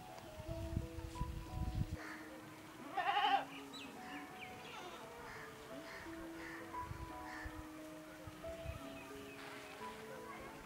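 A goat bleats once, a loud wavering call about three seconds in, over soft background music of long held notes. There are a few low thuds in the first two seconds.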